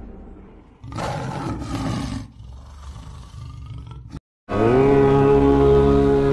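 A big-cat roar sound effect about a second in, lasting just over a second and trailing off. After a brief silence, Indian-style music starts with a sustained string note that glides up and holds as a steady drone.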